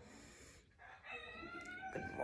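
A rooster crowing faintly, one drawn-out call starting about a second in.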